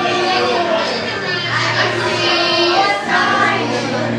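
Karaoke: women singing into a microphone over a loud backing track, with voices from the crowd mixed in.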